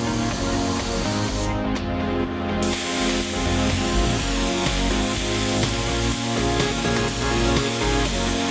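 Compressed-air paint spray gun hissing steadily as it lays an extra effect coat of silver waterborne basecoat onto a car hood to even out mottling, over background music. The hiss breaks off briefly and comes back about two and a half seconds in.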